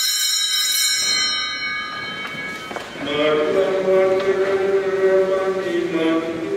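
Altar bells rung at the consecration, a bright ringing that fades away over the first two seconds or so. Singing with sustained notes begins about three seconds in.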